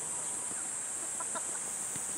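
Steady high-pitched drone of summer insects, with a few faint, short distant calls about half a second in and again just past the middle.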